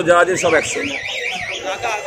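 A high electronic alarm-like tone warbling up and down about six times a second, lasting about a second.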